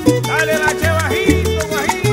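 Cuban son/guaracha record playing an instrumental passage: a bass line and percussion keep a steady beat under a lead melody that bends in pitch.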